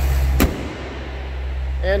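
A 6.4-litre 392 Hemi V8 idles steadily. About half a second in, the hood is slammed shut with a single sharp bang, and after that the idle sounds quieter and muffled.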